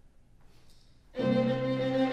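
Quiet room for about a second, then a clarinet and string quartet come in together suddenly and loudly on a held chord, the ensemble's opening entrance.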